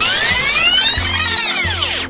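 Loud rewind sound effect: a dense swirl of pitch sweeps that rise and then fall, cutting off suddenly at the end, over background music with a bass beat.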